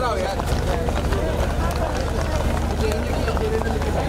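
Several people talking at once in a busy crowd, with a steady low rumble underneath.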